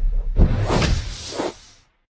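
Intro-logo sound effect: a swelling whoosh over a deep bass boom, a second whoosh rising about half a second in and fading away over the next second.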